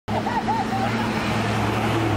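City street traffic: a vehicle engine runs with a steady low hum over road noise, with a few voices in the first second.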